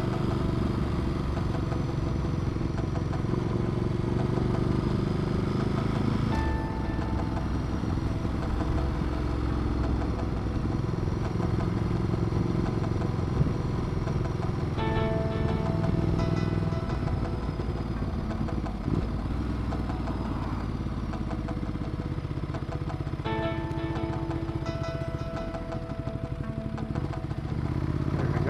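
Ducati Multistrada 1200's L-twin engine running at a steady cruise, under background music whose held notes come and go every several seconds.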